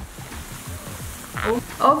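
Steady fizzing hiss of a bowl of dry-ice-chilled liquid bubbling as a rose is held down in it.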